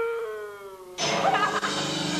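A long drawn-out wailing voice, one held note sliding slowly down in pitch and fading away; about a second in, music cuts in abruptly.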